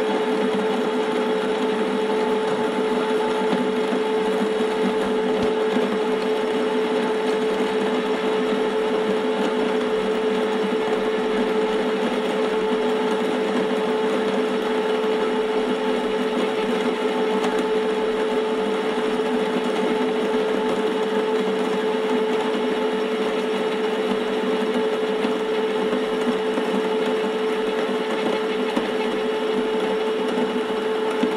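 Wug2-83A coffee grinder running, a steady motor hum with one strong mid-pitched tone that holds unchanged throughout.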